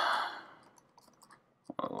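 A breathy exhale trails off, then a few faint computer keyboard keystrokes in a quiet pause, and the voice starts again near the end.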